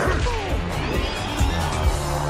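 Cartoon fight sound effects over dramatic background music: sweeping swooshes early on, then sharp crashing hits, the loudest about one and a half and two seconds in.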